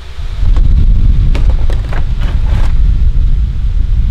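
Air from an electric fan buffeting the microphone: a loud, uneven low rumble that sets in a fraction of a second in, with a few light clicks over it.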